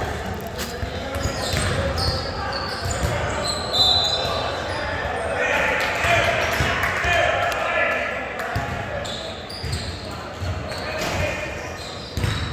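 Basketball game in a large echoing gym: a ball bouncing on the hardwood court and short high sneaker squeaks, under steady background chatter of players' and spectators' voices.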